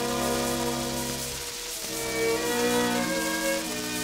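Orchestral introduction led by strings playing held, swelling chords that thin briefly about halfway through before the next chord comes in. It plays from a shellac 78 rpm disc, with record-surface hiss and crackle underneath.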